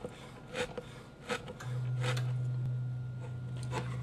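A few knife strokes clicking on a wooden cutting board as sun-dried tomatoes are chopped. A steady low hum starts a little before halfway and continues, with a couple of further light clicks near the end.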